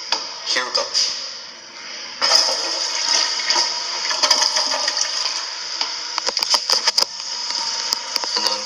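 A commercial restroom fixture flushing: a sudden rush of water begins about two seconds in and runs on steadily, with a few handling knocks.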